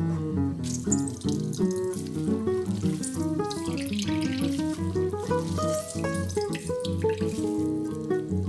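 Water running and dripping into a glass bowl as a block of tofu wrapped in a cotton cloth is squeezed out by hand, starting about a second in, over acoustic guitar music.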